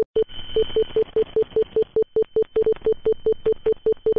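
Text-typing sound effect: a run of short, identical electronic beeps, about five a second, one for each letter as on-screen text appears, over a faint steady high tone.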